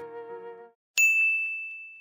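The background music fades out, then about a second in a single bright chime rings out and slowly dies away: the brand's sound logo for the closing card.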